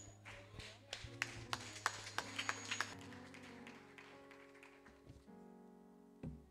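Faint background music from the church band: held chords that swell into a fuller chord near the end, over a run of light taps in the first three seconds.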